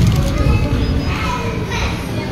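Children's voices and chatter in a busy room, with background music.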